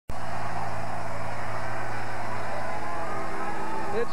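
Large arena crowd cheering and shouting, a steady, dense roar that starts abruptly, with a low steady hum underneath.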